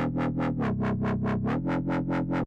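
Dubstep wobble bass from Ableton Live's Operator synthesizer: a held bass note whose low-pass filter is swept by the LFO, pulsing evenly about six times a second. The note steps up in pitch and later back down.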